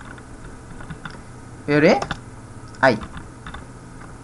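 Computer keyboard typing: a run of light key clicks as code is typed in, broken by two short spoken words about halfway through, which are the loudest sounds.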